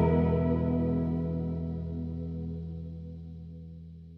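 Background music: a guitar chord, the music's last, ringing and fading out slowly.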